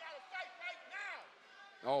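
Mostly speech: faint voices in the first second, then a commentator's exclamation 'Oh' near the end. No punch impacts stand out.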